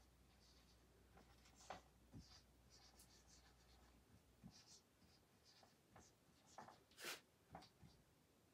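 Faint squeaks and taps of a marker pen writing on a whiteboard, a scattered series of short strokes, the clearest about seven seconds in.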